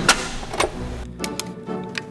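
Small desktop delta robot's motors running as it moves to find its incremental encoders' index (home) position after power is restored. There is a click near the start, then a run of rapid mechanical ticks over a steady hum in the second half.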